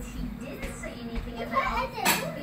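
Children's voices and chatter from a cartoon soundtrack playing on a television, with a steady low hum underneath.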